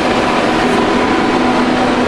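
Steady whir of cooling fans on an induction heater setup, with a faint low hum.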